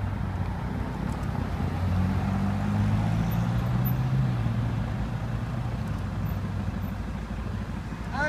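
A Ferrari California and a Mercedes-AMG C63 coupe drive past at low speed, their V8 engines running over tyre and road noise. The engine note swells and rises slightly in pitch about two to four seconds in, then settles.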